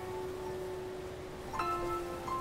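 Background music of soft, chime-like bell notes ringing over a held lower note, with a new cluster of notes struck near the end.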